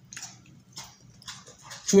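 Two people biting and chewing Twix cookie bars: faint, short, scattered crunches and mouth sounds, with a voice starting just at the end.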